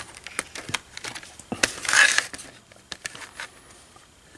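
Light clicks and knocks of handling on a workbench as a handheld digital multimeter and its test leads are set down and placed, with a short rustle about two seconds in.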